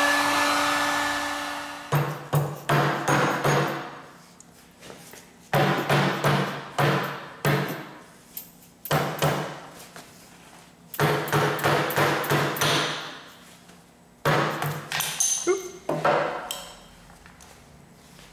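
A heat gun blowing, cutting off about two seconds in. Then a plastic-faced hammer strikes a steel machine vise and the superglued aluminium part in it, in five quick runs of several blows each, each blow with a short metallic ring, to knock the heat-softened glue joint loose.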